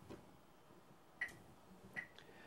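Near silence: faint room tone with three small, soft clicks.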